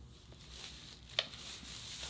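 Faint handling of packaging: light rustling with a single sharp click about a second in.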